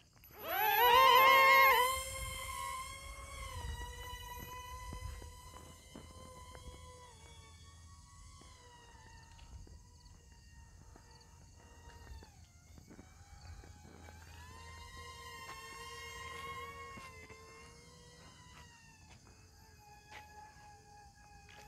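Twin brushed motors and propellers of an XK A100 J-11 foam RC jet whining: they spin up with a rising whine in the first two seconds, then hold a steady high whine that fades as the plane flies off, dips briefly near the middle and swells again before fading.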